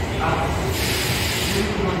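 Subway platform noise: a steady low rumble with a burst of hiss lasting about a second in the middle, as a train approaches. A recorded platform announcement starts near the end.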